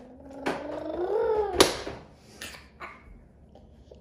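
A toddler's drawn-out wordless whine that rises in pitch and then cuts off with a sharp click about a second and a half in, followed by a few faint clicks.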